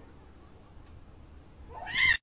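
A kitten meows once near the end, a short call rising in pitch, over faint room noise.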